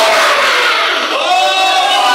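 Loud impassioned shouting in a church: a preacher's voice over the PA with the congregation crying out, including long drawn-out cries in the second half.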